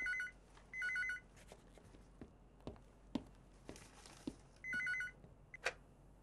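Landline telephone ringing with an electronic trilling ring: two short bursts close together, a pause, then a third burst. A short knock follows near the end.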